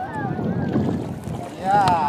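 Wash of shallow surf around a kayak at the water's edge, with wind rumbling on the microphone. Brief voices come at the start and near the end.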